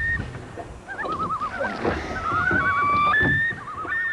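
Common loons calling over a lake: long held wailing notes and quavering tremolo calls, several overlapping about three seconds in.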